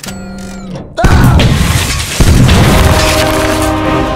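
A loud boom about a second in as a glass coffee-table top is blasted and shatters, with a second sharp crash about a second later; music swells in underneath.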